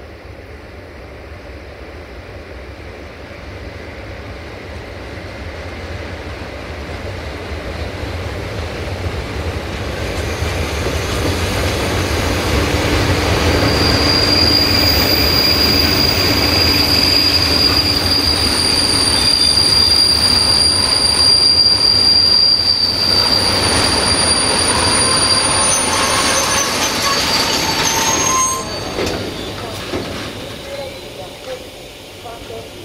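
A long freight train of tank wagons behind an electric locomotive rolling past, building steadily louder with a low rumble of wheels on rail. From about halfway through, the wagon wheels give a steady high-pitched squeal that lasts about twelve seconds, and the sound drops suddenly near the end.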